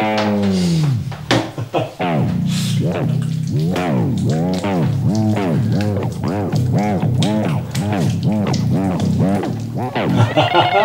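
Background music: a pitched sound that glides up and down about twice a second over a steady bass line, opening with one long falling glide.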